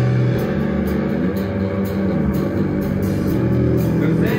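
Live rock band playing, with electric guitar and bass to the fore: sustained low notes and light, regular ticks over the top.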